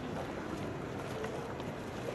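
Steady noise of a large auditorium during a pause in the announcing, with a few faint clicks.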